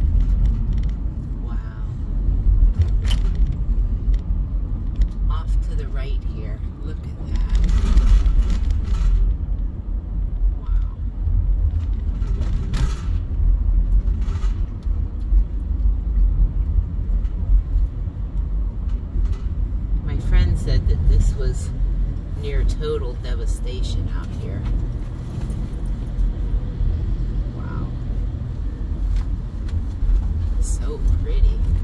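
Steady low road and engine rumble inside a moving minivan's cabin, with a few short knocks and rattles over the rough road.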